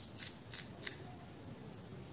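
Fingertips and long fingernails rubbing and scratching through short hair against the scalp, giving about four short crisp crackles in the first second, then quieter.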